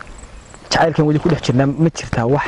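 Crickets chirping faintly in a high, thin series during a short pause, then a man's voice speaking over them from under a second in.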